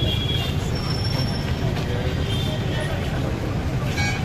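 Outdoor crowd and street noise: a steady low rumble like nearby idling vehicles and traffic, with indistinct voices mixed in.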